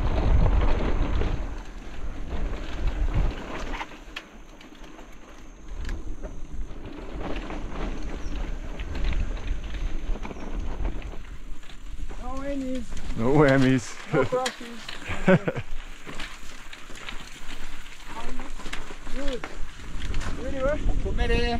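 Mountain bike ridden down a rough dirt trail: tyres crackling over the ground, the bike rattling over bumps and wind on the microphone, strongest in the first few seconds. A voice calls out several times about two-thirds of the way in.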